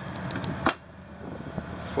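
A steady low background hum, with a single sharp click a little after half a second in.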